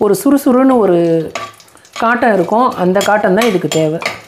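Speech over a slotted steel ladle clinking and scraping in an aluminium pressure cooker as whole spices are stirred in hot ghee.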